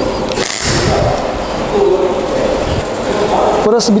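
TIG (argon) welding arc on a car body's steel roof-pillar edge, filling pinholes left by an earlier dent-pulling repair so they won't trap air and blow out under paint. A hiss starts about a third of a second in, then a steady noisy buzz.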